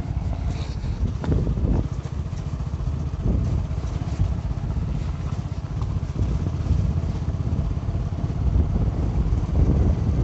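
Motorcycle riding along at a steady pace: the engine runs continuously under a heavy low rumble from the ride over a rough gravel road.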